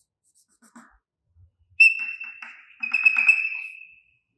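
Chalk on a blackboard drawing a dashed line in short strokes, giving a series of quick taps. Over them is a high, steady squeak of the chalk in two stretches, starting a little under two seconds in and running to the end.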